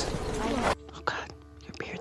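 Whispered speech from a film clip: a loud, breathy passage cuts off sharply a little under a second in. A quieter scene follows, with a steady low hum under soft whispering.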